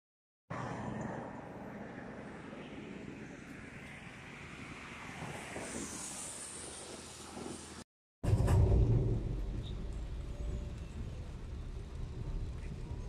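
Road noise from a wet road, with the tyre hiss of a passing vehicle swelling and fading. After a brief break about eight seconds in, a louder low rumble of a car driving in the rain, heard from inside the cabin.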